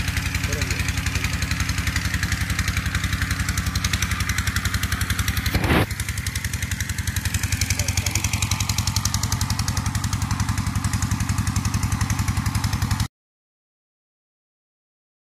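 An engine idling steadily with a fast, even beat. A short sharp click comes about halfway through, and the sound cuts off suddenly near the end.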